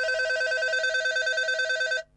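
RugGear RG500 rugged phone's loudspeaker playing its ring tone with the volume turned up. A steady, rapidly trilling electronic ring, really quite loud, that cuts off suddenly at the end.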